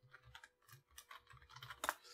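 Computer keyboard typing: faint keystrokes in quick succession as a short word is entered.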